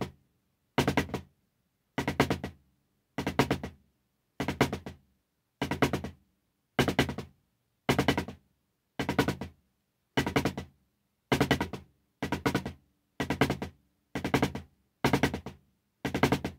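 Drumsticks on a drum playing short rudiment phrases about once a second, with silence between them. Each phrase starts loud and dies away to nothing: a burst dynamic on drag-triplet rolls.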